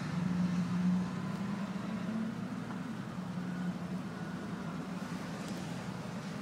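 Power-folding side mirror motor of a GMC Yukon XL Denali whirring as the mirror folds: a steady hum for about two seconds, then, after a short pause, again for about a second.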